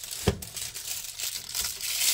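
Packaging being crinkled and pulled off a new purse by hand: a continuous crackling rustle, with one short low thump about a quarter second in.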